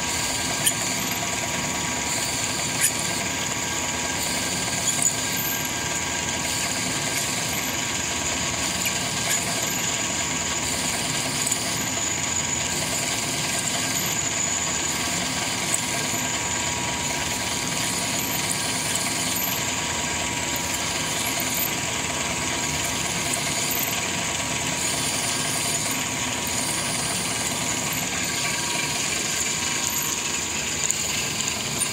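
Hardinge DV-59 lathe running steadily while a twist drill bores into a spinning grade 5 titanium bar under flood coolant. The sound is an even mechanical hum with a steady high whine, and a few sharp ticks in the first five seconds.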